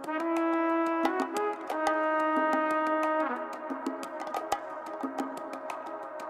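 Background music: held chords over a steady ticking beat, with no bass line. The chords are strongest for about the first three seconds, then soften.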